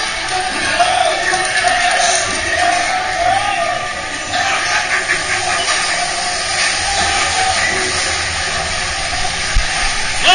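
Show-scene music from the log flume's dark-ride soundtrack, over a steady hiss of rushing flume water, with a brief thump near the end.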